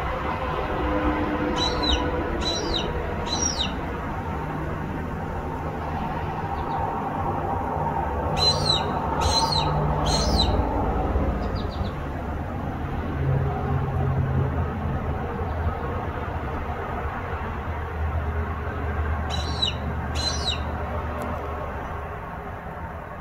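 A bird giving short, high, falling calls: three in quick succession about two seconds in, three more about nine seconds in, and two near the end. Under them runs a steady low rumble.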